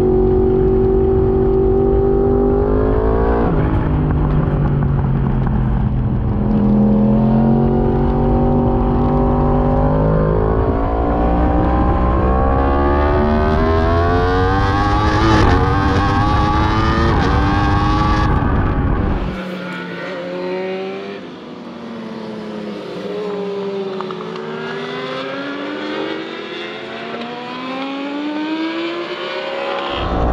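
Yamaha R1 inline-four race engine at full throttle, heard from on board: its note climbs through the gears, dropping briefly at each upshift. A little past halfway the deep rumble cuts out and the sound turns quieter and thinner, the engine note still rising and falling.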